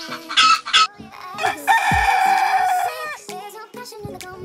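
A chicken calling loudly: a few short squawks in the first second, then one long drawn-out call lasting about a second and a half. Background music plays underneath.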